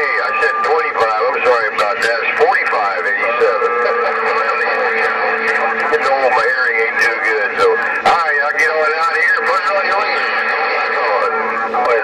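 Uniden Grant LT CB radio on channel 11 (27.085 MHz) receiving distant skip stations. Its speaker gives garbled, thin-sounding voices under steady heterodyne whistles, with hiss and crackling static.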